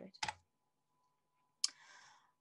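A single sharp computer click about one and a half seconds in, advancing the presentation slide, followed by a brief soft hiss.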